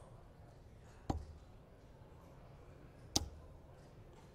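Two darts striking a Unicorn bristle dartboard, each a short sharp thud, about two seconds apart, the second the louder.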